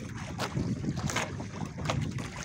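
A fishing boat's engine running steadily, with wind on the microphone and water washing along the hull. Three short sharp knocks come about evenly spaced through it.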